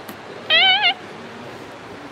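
A girl imitating a cat: one short, high, wavering meow about half a second in.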